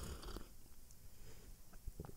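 A faint sip and swallow from a mug close to the microphone: a short burst right at the start, then a few small mouth clicks.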